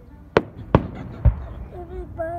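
Aerial fireworks shells bursting: three sharp bangs about half a second apart, the last one deeper. A person's voice comes in briefly near the end.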